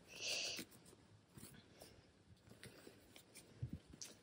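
Faint rustling and rubbing of cotton fabric handled and bunched by hand as elastic is worked through a waistband casing. A short, louder rustle comes just after the start, scattered light rustles follow, and there is a soft knock near the end.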